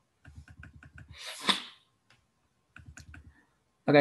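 Computer keyboard typing: a quick run of keystrokes, then a short loud burst of breath noise at the microphone about a second and a half in, then a few more keystrokes.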